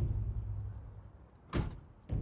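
Low rumble from an advert soundtrack, fading away over about a second and a half, then one short sharp knock about one and a half seconds in.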